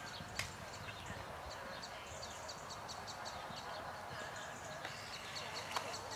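Faint hoofbeats of a cantering horse on a sand arena, under indistinct background voices, with two sharp clicks: one about half a second in and one near the end.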